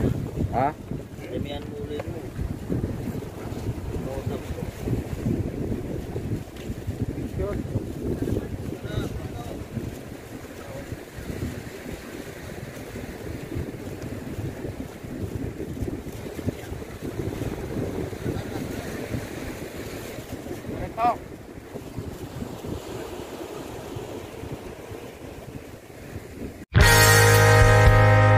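Wind buffeting the microphone over the steady wash of sea waves on rocks, with faint voices now and then.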